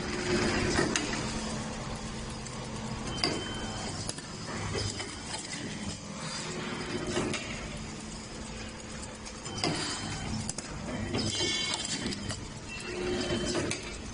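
Tongue depressor bundling machine running: a steady low hum with irregular mechanical clicks and clacks and a few short squeaks as it feeds and bundles the wooden sticks.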